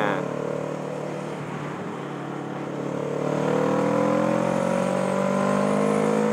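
Motorcycle engine heard from the rider's camera with wind noise, easing off in the first seconds and then rising in pitch as it accelerates from about halfway, holding steady near the end.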